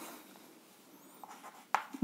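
Chalk writing on a chalkboard: faint scratching strokes and taps of the chalk, mostly in the second half.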